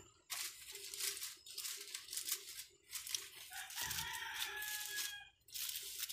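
Aluminium foil crinkling and crackling in repeated bursts as it is folded and pressed around the fish. A long, slightly falling pitched call sounds in the background about halfway through.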